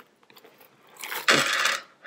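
The metal chain strap of a small leather bag jingles as the bag is handled, in one short rattle about a second in that lasts under a second.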